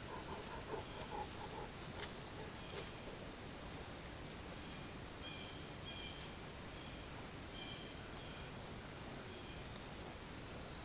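A steady, high-pitched outdoor insect chorus, with short high chirps repeating every second or so over it.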